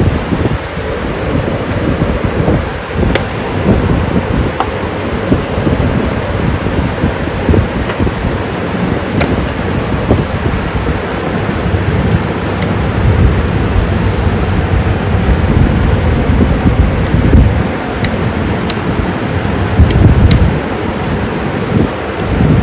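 Small electric desk and tower fans running close to the microphone, their airflow buffeting it in a loud, uneven rumble, with a few faint clicks.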